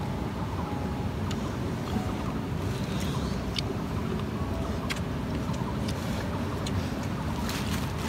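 Steady outdoor background noise with a few faint, sharp clicks of a metal spoon against a metal cooking pot while eating stew and rice.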